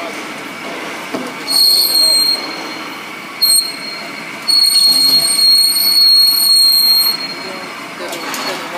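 SKD-600 electric pipe cutting and beveling machine cutting a large steel pipe. Its rotating tool ring runs with a steady machine sound, while the cutting tool squeals against the steel in high screeches: once about a second and a half in, again briefly, then for about two and a half seconds.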